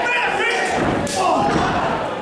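A wrestler's body slamming onto the canvas of a wrestling ring, one sharp thud about a second in, amid shouting voices.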